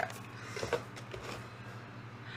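Faint rustles and a few soft knocks of a subscription box's paper filler and items being handled, over a low steady hum.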